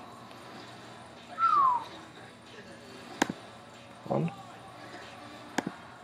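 Two sharp computer-mouse clicks, about two and a half seconds apart, each followed shortly by a spoken count. About a second and a half in there is a short, high squeak that falls in pitch.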